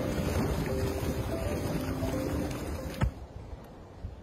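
Steady rushing noise of a steaming hot-spring vent at the pool's edge under background music, ending about three seconds in with a sharp click, after which the sound drops much quieter.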